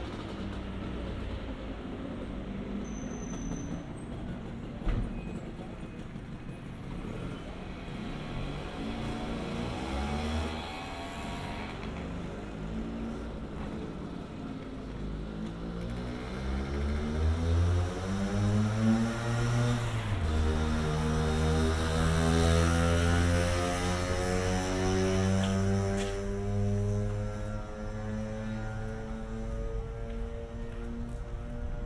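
A motor vehicle's engine on the road below, its pitch climbing steadily as it accelerates from about ten seconds in, shifting around twenty seconds, then running on at a steady pitch. A single sharp knock sounds about five seconds in.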